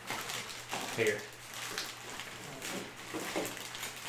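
A brief spoken word, then quiet room sound with a few faint clicks and rustles.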